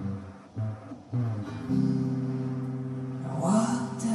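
Acoustic guitar playing a slow blues: a few notes, a short break, then strummed chords ringing out from just under two seconds in. Near the end a sliding note and a brighter splash come in over the chords.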